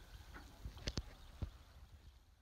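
Faint clanks of goat bells, two close together about a second in and another shortly after, over a low rumble.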